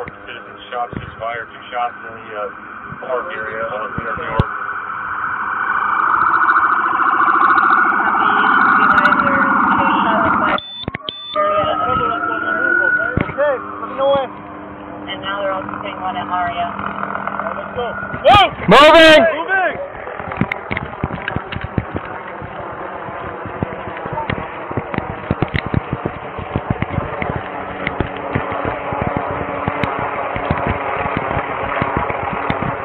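Police siren heard from inside a patrol car. A rising wail comes about twelve seconds in, and a loud, fast-warbling burst near eighteen seconds, over steady vehicle noise and scattered clicks and knocks.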